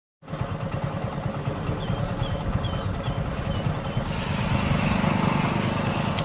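A small engine, likely a motorcycle's, running close by with a dense low rumble that grows louder about four seconds in. A few faint high chirps sound over it in the first half.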